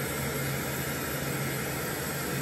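Steady background hiss with a low, even hum underneath, unchanging throughout.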